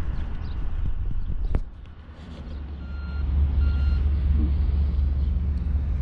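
Wind buffeting the microphone with a heavy, unsteady rumble that swells near the middle. Partway through come two short electronic beeps close together, each about half a second long.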